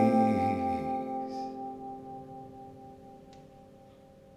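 The final strummed chord on an acoustic guitar ringing out and slowly fading away.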